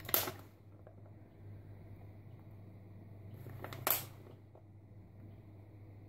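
Two short crinkles of a clear plastic pack of diced ham being handled as the cubes are shaken out onto the pastry, about four seconds apart, over a steady low hum.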